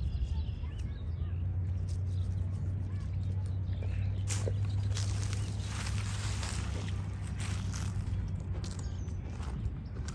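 A mallard's wings flapping as it takes off and flies low over the water, an airy rush of wingbeats from about four to seven seconds in. Under it runs a steady low rumble of wind on the microphone.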